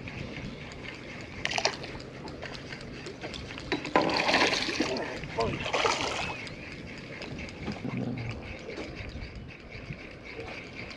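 Water splashing at the surface right beside a boat's hull, in a few bursts: about one and a half seconds in, then around four and six seconds in.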